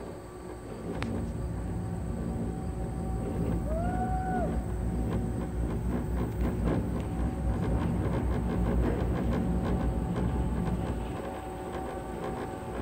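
Doppelmayr cabriolet lift running: a low mechanical rumble with rapid clicking and clatter from the moving haul rope and cabin, building over the first couple of seconds and easing near the end. A short whistled note rises and falls about four seconds in.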